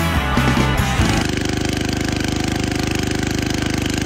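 Rock music for about the first second, then the small engine of a walk-behind garden tractor/tiller running steadily with a fast, even pulse.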